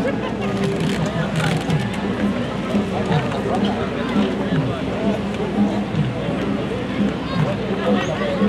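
Spectators' voices: several people talking at once in indistinct, overlapping chatter, at a steady level.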